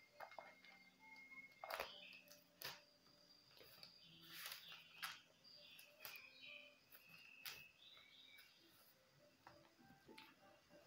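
Near silence: faint scattered paper rustles and light clicks from Bible pages being leafed through.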